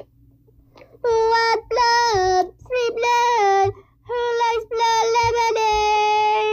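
A child's voice singing wordless held notes. After about a second of quiet come five sung phrases, most ending with a step down in pitch.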